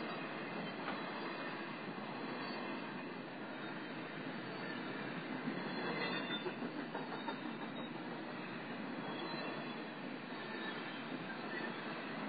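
A train rolling past through a level crossing: a steady noise of wheels running on the rails, a little louder about six seconds in.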